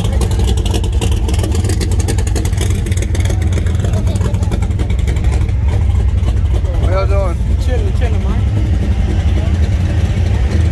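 Steady low rumble of several car engines idling close by, with a person's voice calling out briefly about seven seconds in.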